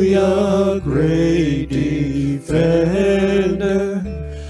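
Male vocalist singing a slow worship song in long held phrases over acoustic guitar and bass guitar.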